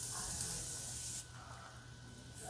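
Morphe Continuous Setting Mist bottle spraying a fine mist: a steady hiss that stops about a second in.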